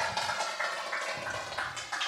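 Small audience applauding, a patter of many hand claps that thins out toward the end.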